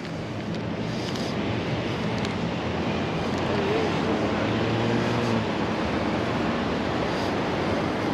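Steady noise of road traffic on a busy street, with a faint pitched hum that comes and goes about halfway through.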